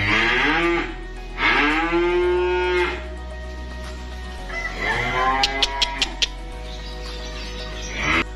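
Young cattle (calves) mooing three times, each call a drawn-out bawl that rises and falls in pitch. A few sharp clicks come during the last call.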